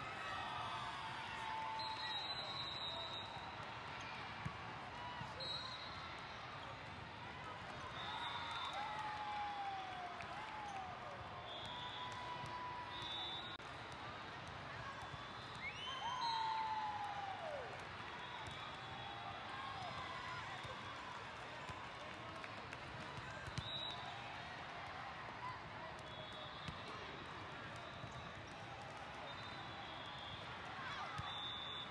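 Volleyballs being hit and bouncing in a big multi-court hall, a few sharp ball contacts standing out about four seconds in and near the end, over a steady din of many distant voices and shouts.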